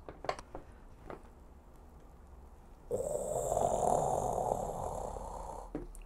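Faint handling clicks as the glazed lid of a Korean ttukbaegi clay pot is gripped, then a rough, steady rushing noise for about three seconds as the lid is lifted off the freshly steamed rice.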